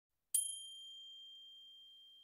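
A small high-pitched bell or chime struck once about a third of a second in, ringing on one clear tone that slowly fades.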